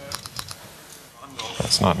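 A few quick key clicks of typing on a laptop keyboard in the first half second, then a man starts speaking.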